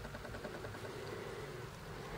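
Faint steady background hiss with a low hum: room tone, with no distinct sound from the knife.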